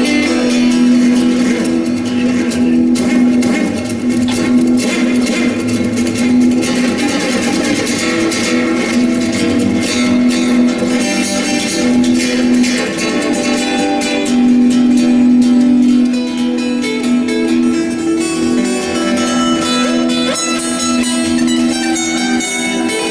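Solo acoustic guitar played fingerstyle in a virtuoso improvisation, with dense plucked runs over a low note that keeps ringing underneath.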